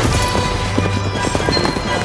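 Horses galloping, a dense run of hoofbeats, over a dramatic orchestral film score with a steady low drone.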